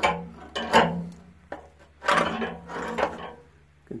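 Old corroded anode rod scraping against the water heater tank's opening as it is drawn out, in two bouts: a short one about half a second in and a longer one around two to three seconds in.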